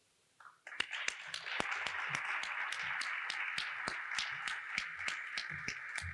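Audience applauding, starting suddenly less than a second in after a brief near silence, with many separate claps heard within the steady clatter.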